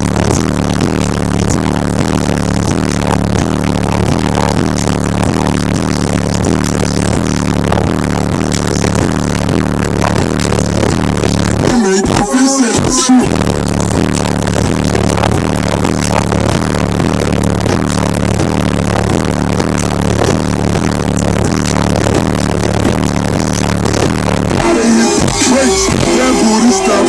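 Rap music with heavy bass played loud through a car audio system with 12-inch Alpine Type-R subwoofers, the bass so strong that the camera microphone cannot capture it cleanly. The bass drops out briefly about halfway through and thins out again near the end.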